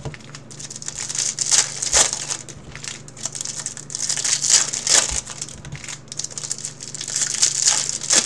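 Foil trading-card pack wrapper crinkling in irregular bursts as hands work it open, over a faint steady low hum.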